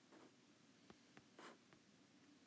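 Faint scratching and tapping of a stylus writing on a tablet: several short strokes and light taps, at very low level over room tone.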